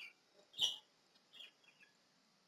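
A few faint, sharp computer mouse clicks, the loudest about half a second in, as a clip is selected and dragged into place.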